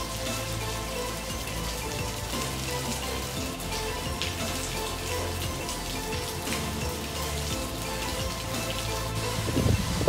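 Heavy rain falling steadily on pavement and parked cars, with scattered ticks of single drops, under background music with held low notes. A loud low rumble starts near the end.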